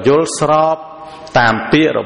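A man preaching in Khmer in a chant-like sing-song. He draws out one syllable long in the first second, pauses briefly, then speaks on.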